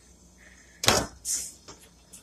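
A sharp click or knock about a second in, then a short hiss and a small tick, amid quiet. These are handling sounds from the refrigeration gauge and stop-leak fittings on the refrigerator's low-side service valve as the sealant is drawn into the sealed system.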